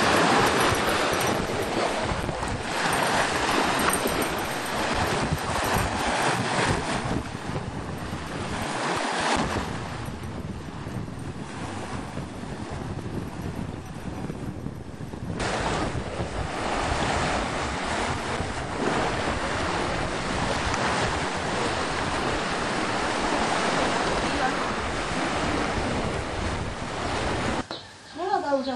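Sea waves washing onto a beach, with wind rumbling on the microphone. The noise drops for a few seconds and comes back suddenly about halfway through.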